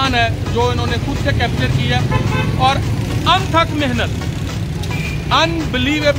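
A man talking over a steady low rumble of road traffic.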